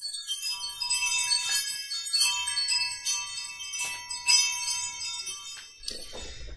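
Chimes ringing: a run of light metallic strikes, with many high tones ringing on and overlapping. It starts suddenly and dies away shortly before speech begins.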